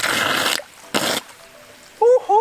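Submerged intake of a PVC water pipe slurping water in two short noisy gulps, the second shorter, as it pulls floating leaves in under strong suction.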